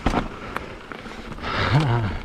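Mountain bike rolling fast over rough dirt singletrack, with sharp knocks and rattles as it hits roots and stones. A short voiced grunt from the rider comes near the end.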